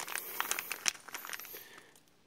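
Small clear plastic zip-lock bag crinkling as it is handled: a quick run of sharp crackles that thins out and fades near the end.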